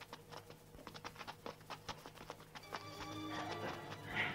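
Film soundtrack: a quick, irregular run of light clicks or knocks, then sustained music notes come in about three seconds in.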